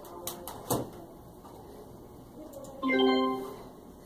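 A few light clicks from a computer keyboard in the first second, then a short steady pitched tone lasting under a second, about three seconds in.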